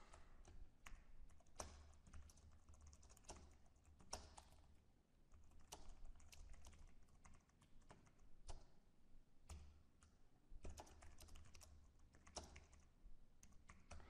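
Faint typing on a computer keyboard: irregular clusters of keystrokes with short pauses between them.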